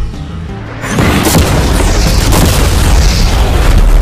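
An explosive charge blowing up an SUV, going off about a second in: a sudden loud boom that carries on as a long rumble.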